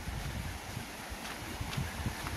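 Wind buffeting the microphone in a low, uneven rumble, with a few light footfalls on a cobblestone road.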